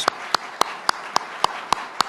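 Audience applauding, with one person's sharp hand claps close to the microphones standing out at an even pace of about four a second.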